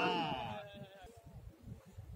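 Several men shouting at once, their overlapping voices trailing off within about a second, leaving a faint low rumble.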